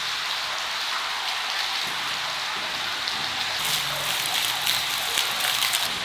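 Rainwater running in a shallow, fast stream over the brick floor of an underground drainage tunnel, a steady rushing of water. A few light ticks come in the second half.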